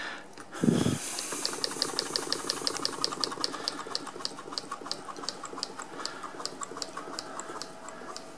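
Willcox & Gibbs hand-crank chain stitch sewing machine stitching fabric as its hand wheel is turned: a quiet, light, even ticking of the needle mechanism, about seven ticks a second, slowing toward the end. Just before the stitching starts there is a soft low thump.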